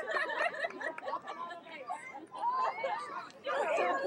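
Chatter of several people talking over one another, with the voices growing louder near the end.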